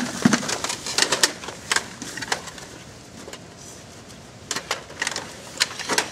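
Irregular clicks, taps and rustles of handling gear and moving about, bunched near the start and again in the last second and a half, with a quieter stretch between.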